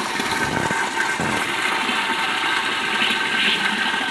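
Water pouring from a fill pipe into a hydroponic reservoir tank, a steady rush and splash with a faint steady high tone underneath. The float switch has been lowered, so the reservoir is automatically topping up with raw water.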